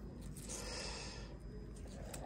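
A soft breath, a short exhale or sigh, beginning about half a second in and lasting under a second, over faint room tone.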